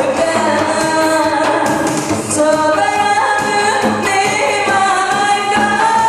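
A woman singing into a handheld microphone over instrumental accompaniment, holding a long, steady note through the second half.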